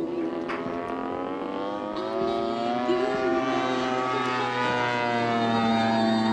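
Engine of a radio-controlled aerobatic model airplane, its pitch climbing steadily over about three seconds as it powers through a manoeuvre, then holding and easing down slightly.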